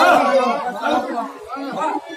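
A man's voice speaking in Tamil through the stage microphone and loudspeakers. It is loudest at the start and trails off over the two seconds.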